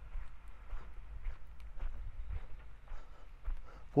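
Footsteps on dry sandy ground as someone walks, faint and irregular, over a steady low rumble.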